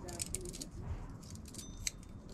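Small metal lock parts and key blanks clinking and clicking as they are picked through by hand in a plastic organizer bin, with a sharper click near the end.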